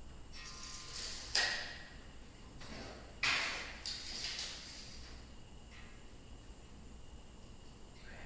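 Steel tape measure being pulled out and let snap back: a light rattle of the blade, then two sudden zips as it retracts into its case, about a second and a half in and again, louder, about three seconds in.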